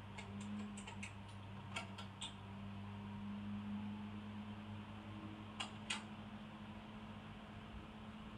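Faint steady low hum, with a few light clicks scattered through it: several in the first couple of seconds and two more close together past the middle.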